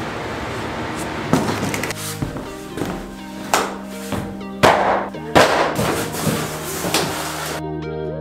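Background music with large cardboard sheets being handled and dropped flat onto a hardwood floor: a handful of sharp thuds and swishes, the loudest about four and a half and five and a half seconds in. The music comes in about two seconds in.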